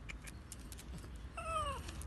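A dog gives one short, high whine, falling slightly in pitch, about a second and a half in, over faint light clicks.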